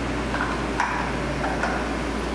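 A new oil filter being threaded by hand onto the filter mount of a 2003 Harley-Davidson Dyna: a few soft scrapes and light clicks from the hands working the filter, over a steady low hum.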